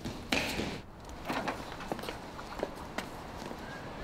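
Gravel crunching: a short scuff about a third of a second in, then scattered light clicks of small stones.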